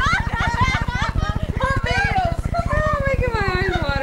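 High-pitched voices talking continuously, over a steady low buzz.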